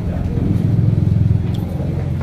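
An engine running close by, a low pulsing rumble that swells to its loudest in the middle and then eases off.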